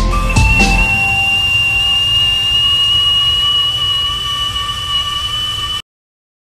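Stovetop whistling kettle whistling at the boil: a steady high two-tone whistle that creeps up in pitch, starting as the last notes of background music fade in the first second. It cuts off suddenly near the end.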